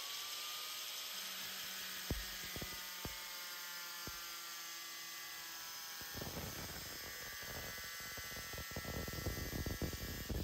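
Angle grinder with a thin 4.5-inch cutoff disc running at a steady whine, with a few sharp ticks early on. About six seconds in, the disc bites into the steel spade bit and a rough, gritty cutting noise joins the whine and grows louder toward the end.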